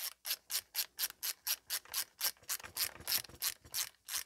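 Ratcheting screwdriver clicking steadily, about five clicks a second, as it drives a screw into a carbine's receiver.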